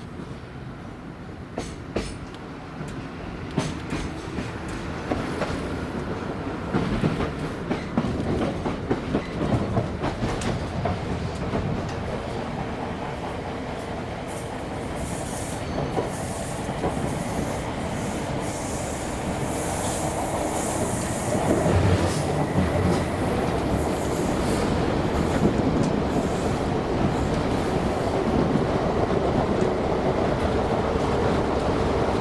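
British Rail Class 317 electric multiple unit heard from inside the carriage: a running rumble with rapid clicks of the wheels over rail joints, growing steadily louder as the train gathers speed.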